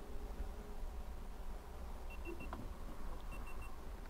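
Two sets of three short, high electronic beeps, about a second apart, as speed changes are sent to the electric trolling motor from the phone app.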